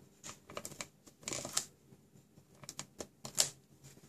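Handheld Stampin' Up Fast Fuse adhesive applicator run along paper box flaps, laying adhesive. It gives a scattered series of short clicks and scrapes, the sharpest about three and a half seconds in.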